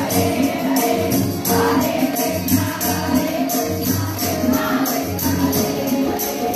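A group of women chanting a Malayalam devotional song in unison over a PA, keeping time with hand claps at about three beats a second.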